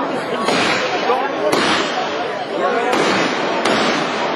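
Fireworks going off: about four sharp bangs, roughly a second apart, over the steady chatter of a crowd.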